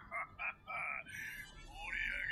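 Pitch-altered voice of an anime character laughing, a quick run of short high bursts, then a longer drawn-out sound near the end.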